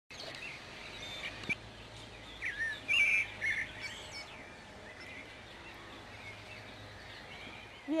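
Wild songbirds singing and calling, with a cluster of louder chirps and whistles in the middle, over a faint steady low hum.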